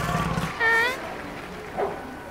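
A cartoon bird character's vocal squeak, a short high pitched call about half a second in, then a brief fainter squeak near the end. A low rumble stops just before the first call.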